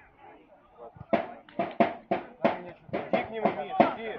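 A voice shouting a quick run of short, sharp syllables, about three a second, starting about a second in.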